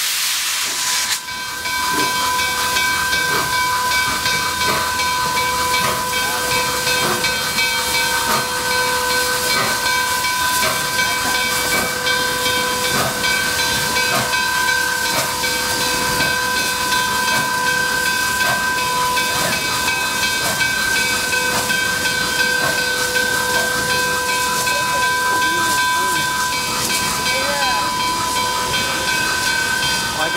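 Steam locomotive 765, a 2-8-4 Berkshire, hissing steam while backing up. About a second in, a steady high-pitched tone starts and is held unbroken.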